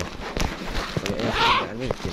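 A clear plastic bag being handled close to the microphone, rustling and crinkling in short rasps, with a brief voice sound near the end.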